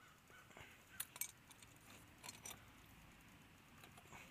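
Faint metallic clinks from a chained dog-proof raccoon trap being handled as a trapped raccoon's paw is worked free of it: a few light clicks about a second in and again a little after two seconds.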